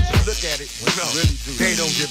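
Hip-hop track playing: a rapped vocal over a beat with regular drum hits.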